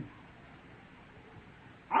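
A pause in a man's speech: faint steady hiss of an old sermon recording, with his voice ending at the start and starting again right at the end.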